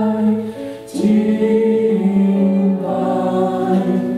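A group of voices singing a slow worship chorus in Mandarin, led by a woman on a microphone, with keyboard accompaniment. The notes are long and held, with a short breath between phrases about a second in.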